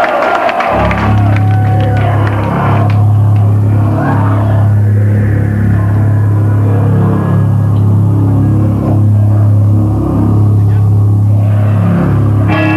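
A low bass note starts about a second in and is held as a steady drone through a live metal PA, with faint crowd voices over it.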